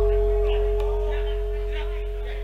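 A single struck gamelan gong note ringing on and slowly fading, with a fainter higher overtone, over a steady low hum and faint crowd chatter.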